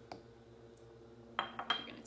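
Small glass bowl set down on a kitchen countertop: a light tap at the start, then two sharp clinks about a second and a half in, the second with a brief glassy ring.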